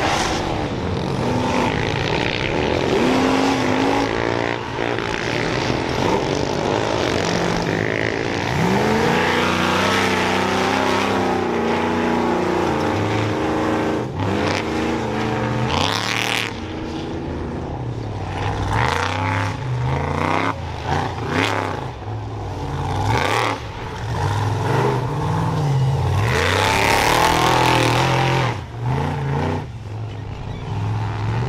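Off-road race truck engines revving hard and running at high speed on a dirt track, the pitch climbing and dropping again and again as the throttle opens and closes.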